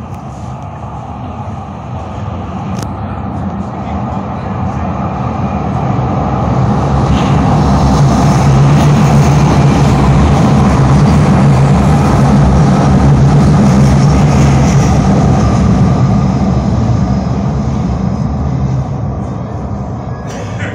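Calgary Transit CTrain light-rail train approaching and passing close along the platform. Its rumble and low motor hum swell to a peak around the middle and then fade as it pulls away.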